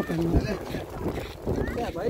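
Wind buffeting a phone's microphone, with low rumbling thumps and the rustle of clothing rubbing against the phone as it is carried.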